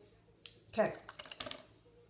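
Light clicks and taps from handling a plastic mascara tube and wand and a compact mirror: a single tap, then a quick run of several clicks from about one to one and a half seconds in.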